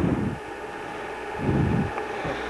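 Two low rumbling puffs of wind-like noise on the microphone, one at the start and one about a second and a half in, over a steady hiss.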